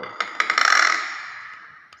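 Common hill myna giving a harsh, rasping hiss that opens with a few clicks, peaks about half a second in and fades away over the next second.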